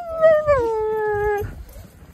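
Siberian husky giving one long howling whine that drops in pitch in steps and stops about a second and a half in. It is the cry of a dog stuck under a deck with no room to turn around.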